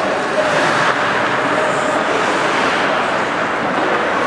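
Loud, steady din of an ice hockey arena during play: a rushing noise with no single clear source standing out.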